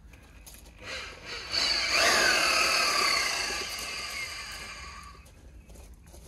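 Electric drill motor driving a reduction gearbox that turns a screw pile into the ground: a high motor whine that comes up about a second and a half in, dips in pitch as it takes the load, then slowly fades away over the last couple of seconds.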